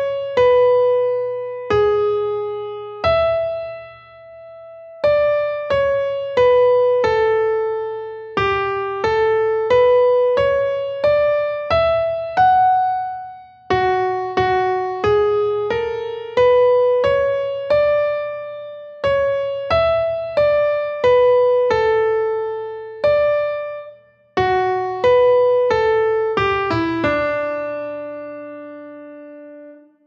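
A piano plays a single-line melody, one struck note at a time, about one to two notes a second with a few short pauses. It is the complete dictation melody played through as a final check. The melody closes on a longer-held low note near the end.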